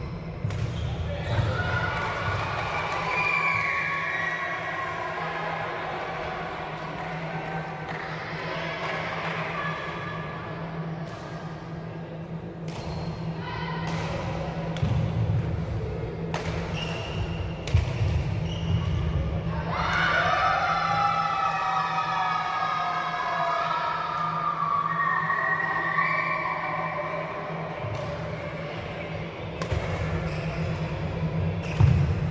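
Badminton rally on an indoor wooden court: irregular sharp racket strikes on the shuttlecock and players' footfalls, ringing in a large echoing hall, with unclear voices in the hall louder in spells and a steady low hum underneath.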